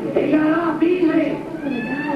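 Voice from a television programme, drawn out and wavering in pitch, heard through the TV set's speaker, with a couple of rising glides near the end.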